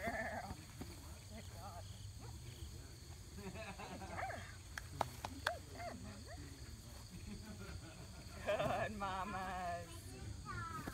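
A puppy growling and whining in short bursts while biting and tugging on a bite pillow, ending in a louder, wavering high-pitched cry near the end. Two sharp clicks come about halfway through.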